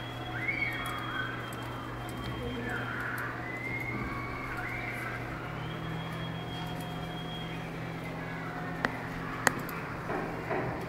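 Computer-room background: faint children's voices in the distance over a steady low hum, with two sharp clicks near the end.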